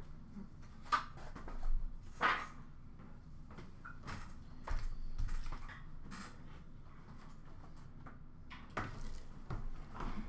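Scattered light knocks, clicks and rustles of trading cards, card packs and boxes being handled and set down, loudest about one and two seconds in and again around five and nine seconds.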